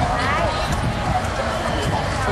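Several people's voices talking and exclaiming at once, over a steady low rumble.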